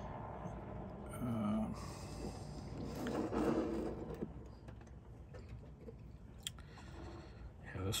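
Faint clicks and scraping of a steel screwdriver blade and pliers working the crimp barrel of an MC4 connector pin, prying the curled-over crimp open.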